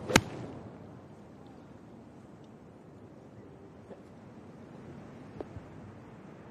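A golf tee shot: one sharp crack of the club striking the ball just after the start, then a faint steady outdoor hush while the ball is in flight.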